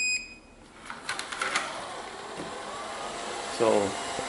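Deebot N78 robot vacuum giving a short single beep as it is started, then a few clicks and its small suction fan and brushes spinning up into a steady, fairly quiet whir with a faint rising whine.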